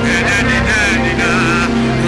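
A male singer performs a worship song into a microphone, his voice wavering and ornamented, over accompaniment with steady held bass notes.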